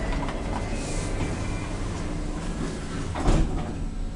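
Escalator running with a steady low hum and rumble, and a single louder knock about three seconds in.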